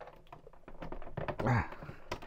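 Light clicks and taps of hands handling gear on a desk, with a short low voiced murmur from a man about one and a half seconds in.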